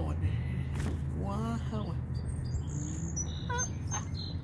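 Birds chirping faintly in the background, with thin high calls in the second half, over a steady low hum. A short wordless voice sound rises and falls about a second in.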